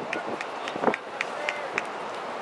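Voices of soccer players and onlookers calling out at a distance in short, scattered shouts, over a steady outdoor background hiss.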